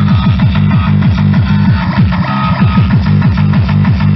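Loud tekno blasting from a free-party sound system: a fast, even kick drum, each beat dropping in pitch, under a dense electronic mix.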